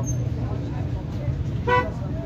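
A brief vehicle horn toot about one and a half seconds in, over a steady low rumble of street traffic.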